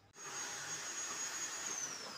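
A steady rushing noise with a thin, high whine, starting suddenly just after the start; near the end the whine slides down in pitch.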